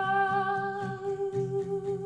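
A woman singing one long, steady held note over a strummed cutaway acoustic guitar.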